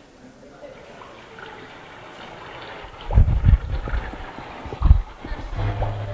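Recorded rain sound playing over classroom speakers, a soft hiss, with several deep thuds from about three seconds in. A low steady note comes in near the end as a song starts.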